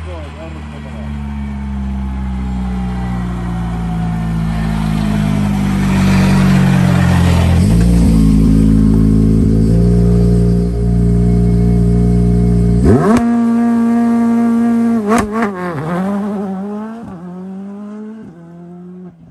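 Škoda rally car's engine running at the start line, then revving hard as it launches about two-thirds of the way in, with the revs dropping at a gear change and the sound fading as it drives off.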